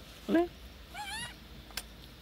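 Young macaque giving one short, high squeaky call about a second in. A single sharp click follows near the end.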